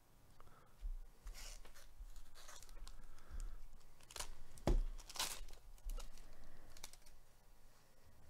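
A sealed trading-card pack's wrapper being torn open by hand: a run of ripping and crinkling noises, the sharpest rip a little past halfway.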